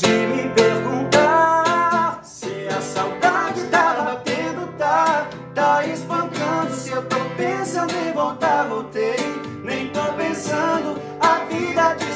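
Acoustic guitar strummed in a steady pop rhythm under male voices singing a sertanejo pre-chorus and chorus. The chords move from F and G to C and on to A minor.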